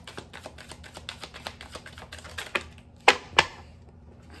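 Tarot deck being shuffled by hand: a rapid run of soft clicks as the cards slide and tap together, then two sharper snaps a little after three seconds in.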